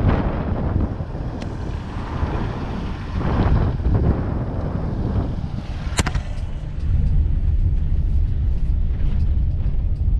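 Car driving on a wet road, heard from inside the cabin: a steady low rumble of engine and tyres, with swells of tyre hiss from the wet tarmac. There is a single sharp click about six seconds in, and the rumble grows louder from about seven seconds.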